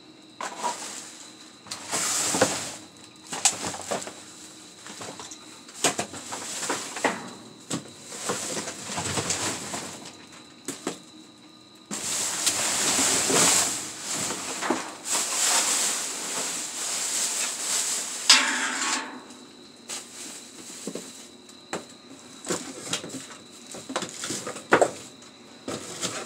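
Plastic film, bubble wrap and cardboard boxes being shifted and dug through by hand: irregular crinkling and rustling with scattered knocks, heaviest in the middle stretch.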